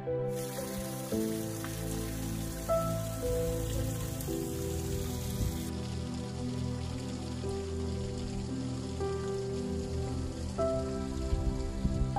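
Water from a small stream trickling and splashing down over stones in a steady hiss, under soft background music of sustained keyboard notes.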